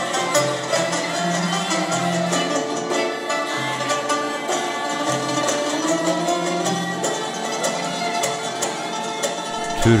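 Uyghur traditional folk ensemble playing: quick, dense struck notes from a hammered dulcimer over a violin, a bowed long-necked lute and plucked long-necked lutes, with steady low held notes underneath.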